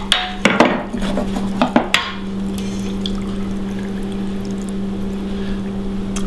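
Chicken broth poured in a steady stream from a pot through a fine-mesh metal strainer into a stockpot. There are a few sharp clinks of metal cookware in the first two seconds.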